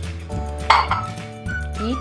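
A small glass bowl clinks once as it is set down, a single sharp strike about a third of the way in, over steady background music.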